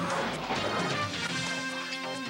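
News theme music with a crash hit right at the start that rings away over about half a second, followed by held chords.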